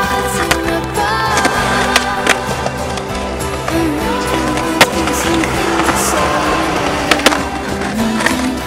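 Skateboard wheels rolling and trucks grinding along a skatepark ledge, with a few sharp clacks of the board about midway and near the end, under background music.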